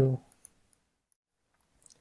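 A few faint, sharp clicks at a computer, short ticks just after the start and a small cluster near the end, as a file name is entered in a save dialog; otherwise near silence.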